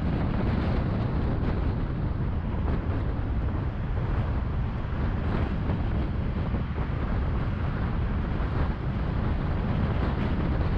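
Car driving at freeway speed: a steady rumble of tyres on the road with wind noise.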